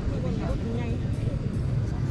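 Wind buffeting the microphone in a low rumble, with faint voices from people in the distance.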